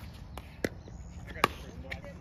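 Pickleball paddles hitting a plastic pickleball in a quick volley exchange at the net: two sharp pops under a second apart, with fainter pops in between.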